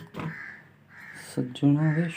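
A person's voice making short wordless "hee" sounds, starting about one and a half seconds in after a mostly quiet stretch with a faint brushing hiss.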